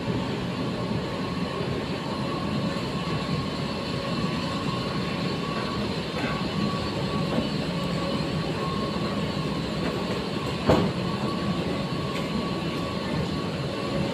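A metro-station escalator running, a steady mechanical drone with a faint constant whine. A single sharp knock is heard about eleven seconds in.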